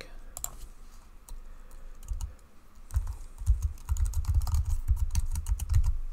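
Typing on a computer keyboard: a few scattered keystrokes, then a quick, busy run of keystrokes over the last three seconds.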